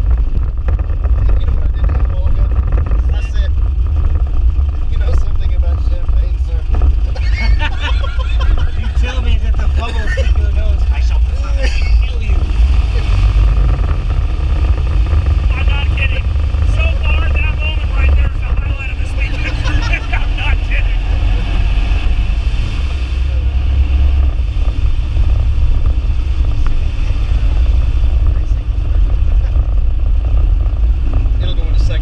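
Air-cooled VW Beetle flat-four engine running under way, heard from inside the cabin as a steady low rumble. Laughter from the occupants breaks in twice, in the middle stretch.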